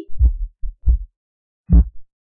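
A few short, low thumps: three soft ones in the first second and a louder one near the end.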